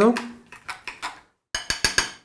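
Metal spoon scraping and clinking against a glass mixing bowl while stirring a thick mayonnaise dressing, with a quick run of sharp clinks in the last half second.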